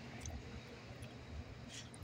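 Quiet background: a faint, steady low rumble with a couple of soft, brief handling noises.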